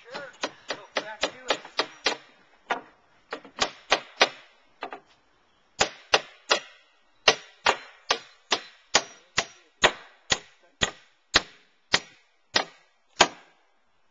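Hammer blows on a wooden board, about thirty sharp strikes: quick and uneven at first, then, after a short pause, a steady beat of about two a second.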